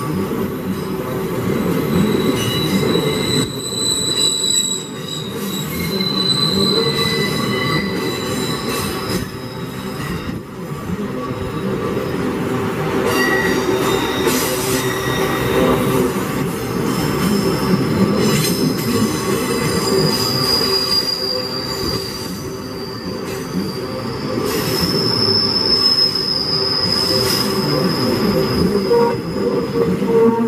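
Wagons of a passing ore train rolling by at close range, with a steady heavy rumble of wheels on the rails. High-pitched metallic squeals from the running gear come and go, growing shriller and stronger in the second half.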